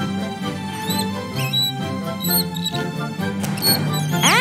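Cartoon background music with held low notes, dotted with a few short, high squeaky chirps.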